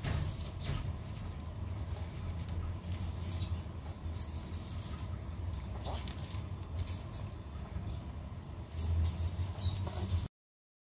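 Plastic bag rustling and being handled close to the microphone, with light scattered pattering and a continuous low rumble underneath; a little louder near the end.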